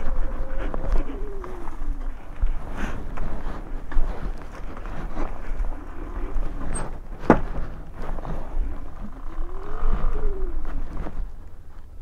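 Sur-Ron Light Bee X electric dirt bike's motor whine dropping in pitch as the bike slows, then rising and falling again a couple of seconds before the end as it pulls away and eases off, over a low rumble of tyres on a dirt track. A brief sharp squeak comes about seven seconds in.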